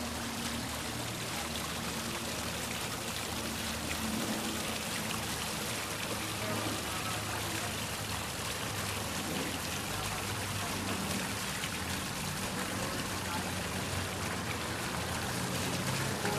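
Garden fountain splashing steadily into its basin, a constant rush of running water.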